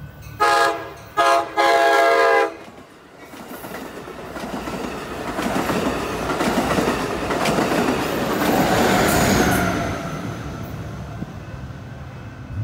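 Passenger train horn sounding three blasts, two short then a longer one, followed by the train rushing past at speed with wheel clatter that builds to a peak near the end and then starts to fade.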